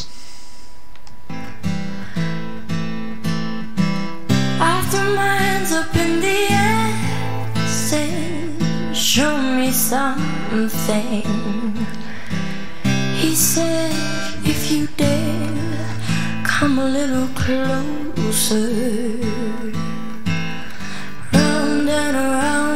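A female singer performing a slow ballad accompanied only by an acoustic guitar. The guitar comes in about a second in and the voice a few seconds later, its held notes wavering with vibrato.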